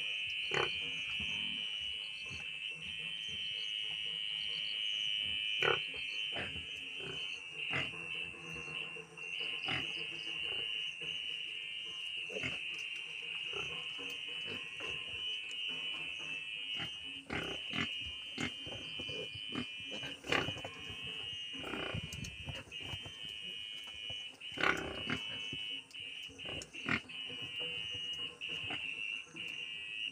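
Pigs, a sow and her piglets, grunting and squealing, with scattered knocks, over a steady high-pitched drone.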